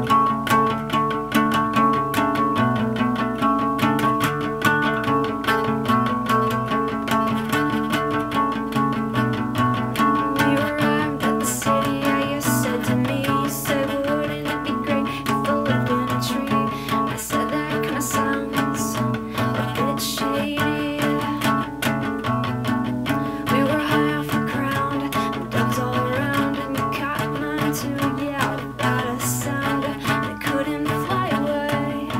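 Steel-string acoustic guitar, capoed, strummed steadily in a chord pattern as an instrumental passage with no singing, with some sharper, brighter strokes in the middle.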